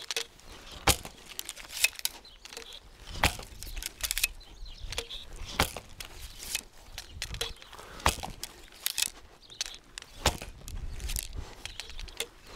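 A series of sharp knocks and snaps from a short Turkish (Sipahi) bow being shot again and again: bowstring releases and arrows striking a target, with footsteps on grass in between.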